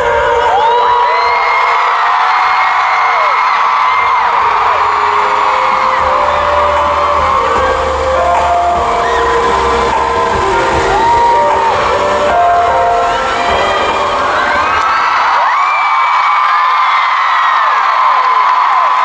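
Arena crowd screaming and cheering over the closing music of a pop performance. Many high screams slide up and down throughout. The music's bass drops out about fifteen seconds in, leaving mostly the screaming.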